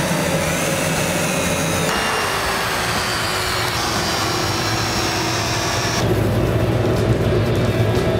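Power drill running as it drives a ceramic bolt through ceramic fiber blanket into a soft fiber furnace lining. Its motor whine sags slowly in pitch under load and changes abruptly about two and six seconds in.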